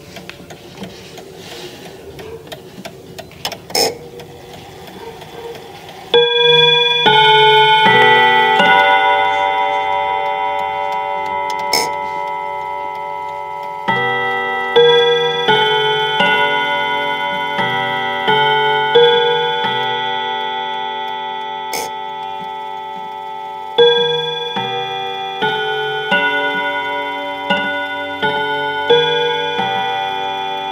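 A mechanical mantel clock chiming. From about six seconds in, its hammers strike a melody on the steel rod gongs, one note about every second in repeated phrases, each note ringing on and overlapping the next.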